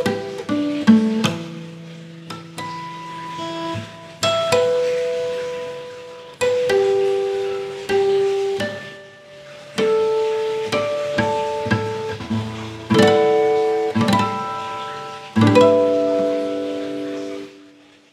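Natural harmonics on a steel-string acoustic guitar: strings plucked while a finger lightly touches them over the fret wire at the 5th, 7th and 12th frets. A new note or small group of notes sounds every one to three seconds and is left to ring out.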